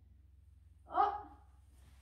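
A boy's brief voiced sound, a fraction of a second long, about a second in, with another breathy vocal sound starting at the very end, over a faint steady low hum.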